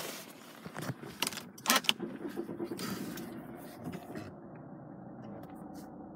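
A few sharp clicks and a key rattle in the first two seconds, then the steady low hum of the Volvo 2.4 D5 five-cylinder turbo-diesel idling, heard from inside the cabin.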